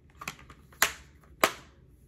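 Plastic Blu-ray case clicking as it is handled: a few light ticks, then two sharp clicks about half a second apart near the middle.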